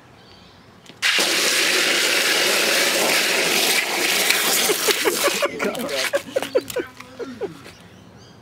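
Longboard wheels and a slide glove sliding across asphalt in a toeside slide close by. A loud hiss starts suddenly about a second in and lasts some four seconds, then breaks into short scrapes and squeaks as the slide ends.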